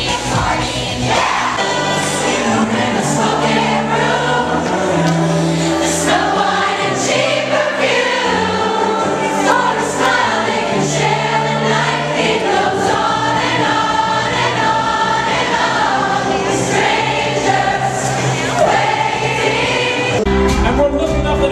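Music with many voices singing together over held bass notes.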